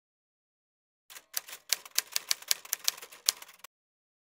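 Typewriter keys clacking in a quick run of about a dozen strokes, several a second. The run starts about a second in and stops abruptly a little after two and a half seconds.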